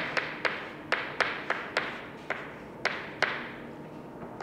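Chalk striking and tapping against a chalkboard while an equation is written: about a dozen sharp, irregular taps, each followed by a short room echo.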